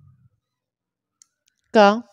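Near silence broken by one faint short click from a ballpoint pen on paper about a second in, followed by a single spoken word near the end.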